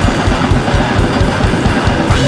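Grindcore band playing: heavily distorted guitar over fast, dense drumming.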